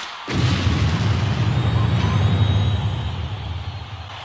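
A low, rumbling boom sound effect that starts just after the opening and holds for about three seconds before fading out.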